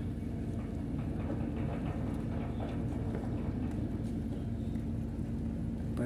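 Steady low engine hum with a constant droning tone, unchanging throughout.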